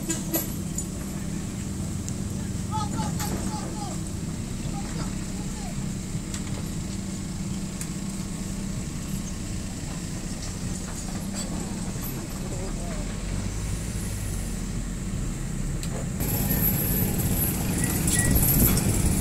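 Hydraulic excavator's diesel engine running steadily, with men's voices calling over it. About two seconds before the end the sound turns abruptly louder, with a high hiss.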